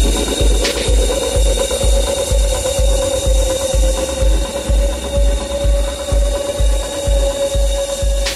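Techno from a DJ mix: a steady kick drum at about two beats a second under a held synth tone that rises slightly in the first second, with dense clicking, mechanical-sounding percussion on top.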